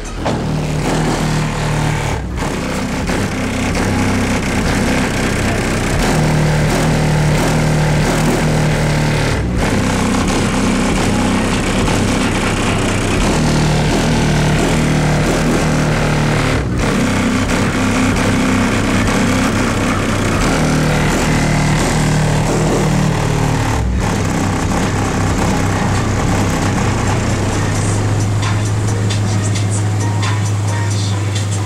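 Bass-heavy music played loud through a van's car-audio subwoofers, heard from outside the vehicle. Deep held bass notes change every few seconds, the music drops out briefly about every seven seconds, and a long steady low note starts near the end.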